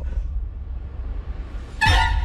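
Trailer sound design: a low rumble drone, then, near the end, a sudden loud cinematic impact hit that falls in pitch and rings on in steady tones.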